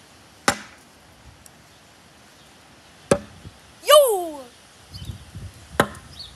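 Throwing knives hitting a wooden target board: three sharp thunks, about two and a half seconds apart. Between the second and third, a person lets out a short cry that falls in pitch.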